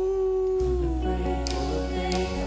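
Live worship band music with a long wordless sung note held steady, then sliding down about halfway through. A low bass line comes in under it at the same moment.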